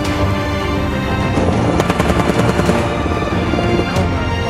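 Theme music with a burst of rapid automatic gunfire mixed in, starting about a second in and lasting about a second and a half.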